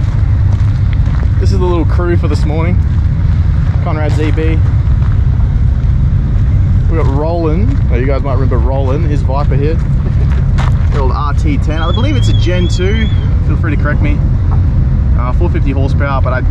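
A car engine idling steadily close by, a deep even rumble, with people talking in the background.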